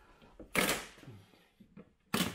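Plastic side vent being pulled off a Land Rover Defender's front wing: a sharp snap about half a second in as a push-in clip pops free, then a few faint clicks.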